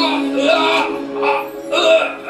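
Music with a sung melody: long held vocal notes that bend in pitch over sustained instrumental backing, a drama soundtrack ballad.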